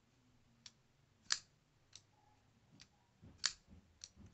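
Boker Magnum folding knife clicking as it is handled in the hand: a few short, sharp clicks from the blade and lock, two louder ones about two seconds apart with fainter ticks between.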